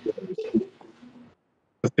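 A man's brief low hum of hesitation, followed by a short pause and a small click just before he speaks again.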